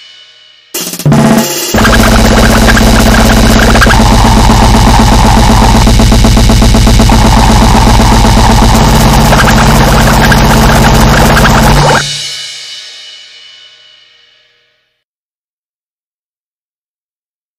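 Grindcore-style metal band recording with drums and cymbals: the last sound of one track dies away, a short loud burst comes about a second in, then a short track plays at full loudness, stops about twelve seconds in and rings away to silence.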